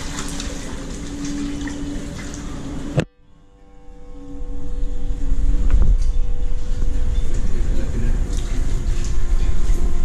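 Water from a hose pouring and splashing into a tiled tank around a person bathing in it. About three seconds in the sound cuts off abruptly, then comes back as louder rushing water with a strong low rumble.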